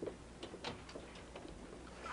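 A run of light, irregular clicks and taps, about seven in two seconds: a door's lock and latch working as an apartment door is unlocked and opened.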